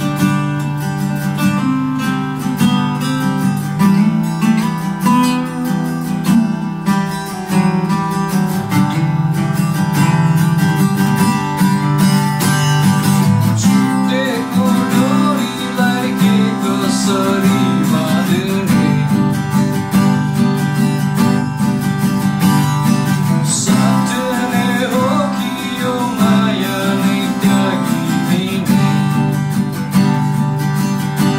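Two acoustic guitars playing together, strummed chords over picked notes. A man's singing voice comes in about halfway through.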